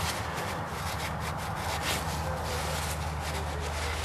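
Paper towel rubbing and rustling as a gloved hand wipes the rim of an oil filter housing clean, in irregular strokes. A steady low hum runs underneath.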